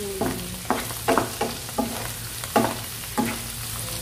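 Sliced mushrooms and garlic cloves sizzling as they fry in a nonstick pan, stirred with a wooden spoon that scrapes and knocks against the pan in repeated, irregular strokes.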